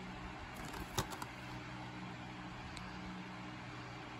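A plastic Blu-ray case being handled and turned over: one sharp click and two smaller ticks about a second in, over a steady low background hum.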